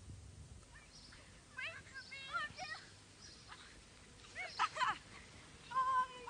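A high-pitched human voice giving short wordless cries or calls, which grow louder near the end.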